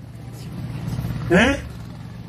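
A man's voice over a microphone and PA, one short syllable rising in pitch about a second and a half in, over a steady low hum.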